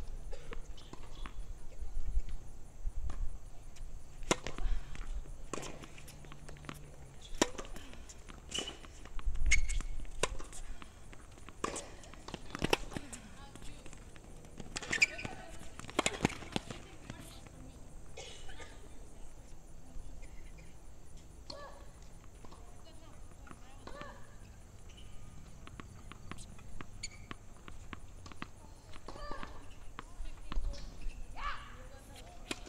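Tennis balls struck by rackets and bouncing on a hard court during a rally: a string of sharp pops about a second or so apart, densest from about four seconds in until about seventeen seconds in, then only scattered ones.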